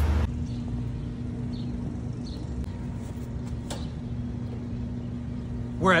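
Jeep driving: a steady low engine and road drone with a constant hum and a few faint ticks over it.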